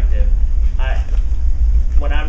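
A man talking in short fragments with pauses, over a steady low rumble.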